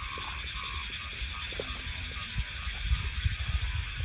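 Frogs croaking in a steady night chorus, short calls repeating several times a second. In the second half, footsteps and rustling on a muddy path add low thuds.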